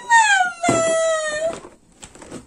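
A baby squealing in two long, high-pitched notes: the first slides down in pitch, the second is held steady.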